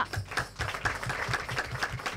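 A small group applauding with quick, uneven hand claps.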